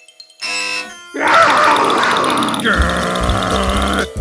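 Cartoon sound effects and music: a short electronic chime about half a second in, then a loud, dense musical sting from about a second in that runs on as an alarm-like blare.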